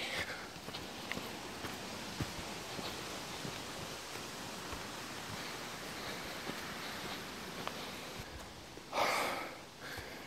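Steady rustling hiss with faint scattered ticks from footsteps through dry leaf litter and undergrowth on a forest floor. A louder, breathy rush of noise comes about nine seconds in.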